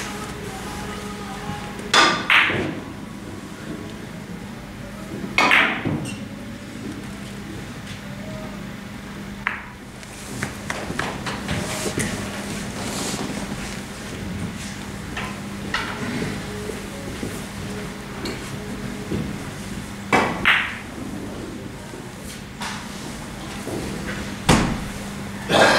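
Carom billiard balls being struck by the cue and clicking against one another during three-cushion shots: several sharp clacks with a brief ringing tail, the loudest about two seconds in, near six seconds and near twenty seconds, with a run of lighter clicks in between, over a steady low hum.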